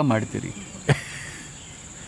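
A cricket's steady, high-pitched trill comes in about half a second in and carries on unbroken. Just under a second in, a single sharp click is the loudest sound.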